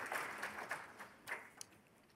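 Faint applause from an audience, a patter of many hand claps that thins out and stops about a second and a half in.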